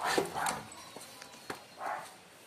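A dog vocalizing in two short bursts, one at the start and one near the end, with a sharp click in between.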